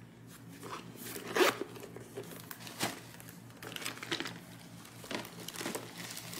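Tissue paper crinkling and rustling as a leather bucket bag and its strap are handled in their packaging box, in irregular short bursts, the loudest about a second and a half in.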